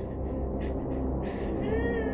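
Eerie horror-film sound: a steady low drone under a few short hissy rustles, then a high, wavering wail-like tone that rises in near the end.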